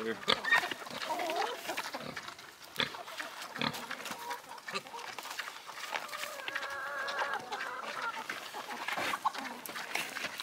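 Pigs grunting as they eat corn in and beside a wire crate, with short pitched calls and a couple of sharp clicks about three seconds in.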